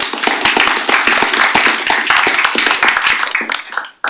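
Audience applauding: dense clapping that thins out and fades near the end.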